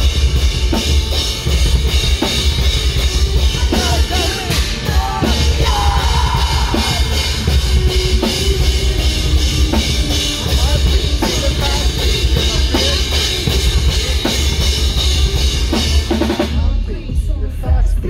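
A rock band playing loud and live, with a pounding drum kit, guitars and a singer. About a second and a half before the end, the drums and guitars drop away, leaving the bass and the voice.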